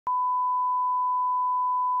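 Line-up test tone that accompanies colour bars: one steady, pure beep at a single pitch, the reference tone used to set audio levels, starting with a brief click.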